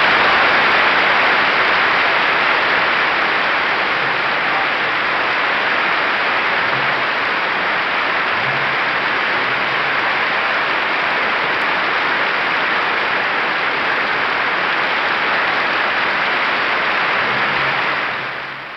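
Concert audience applauding at the close of a live orchestral performance, a dense steady clapping heard on an old broadcast recording, dying away near the end.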